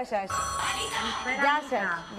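A telephone line coming through on air: a steady electronic ringing tone with low hum for about a second, under voices.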